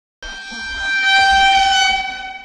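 A meme reaction sound-effect sting: a sustained horn-like chord of several steady tones that comes in just after a moment of silence and swells louder over the first second before holding.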